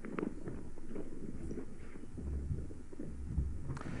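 Low, irregular thumps and rumble, strongest about halfway through.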